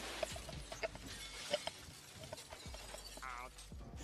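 Cartoon sound effect of broken glass: many small, quiet clinks and tinkles scattered through, like shards settling. A brief warbling tone comes near the end.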